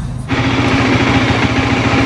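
Motorcycle engine idling steadily with a fast, even pulse. The sound cuts in suddenly about a third of a second in.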